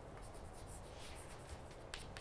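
Chalk writing on a chalkboard: faint, quick scratching strokes, with one sharp tap near the end.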